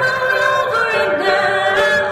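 A woman singing long held notes over soft instrumental backing. Her voice holds a high note, dips in pitch about a second in, then rises and holds again.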